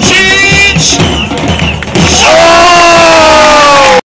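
Loud music over a public-address system with a steady beat. About two seconds in, a long held voice starts, very loud and distorted, sliding slowly down in pitch.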